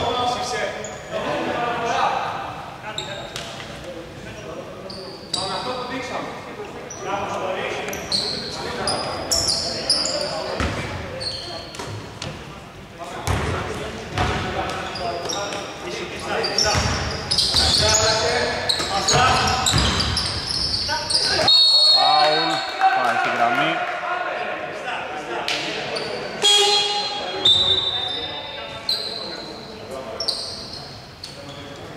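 A basketball dribbled and bouncing on a hardwood court, with sneakers squeaking and players calling out, all echoing in a large, nearly empty arena.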